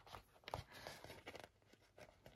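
Near silence with a few faint ticks and paper rustles from tweezers and fingers picking tiny paper stickers off a sticker sheet.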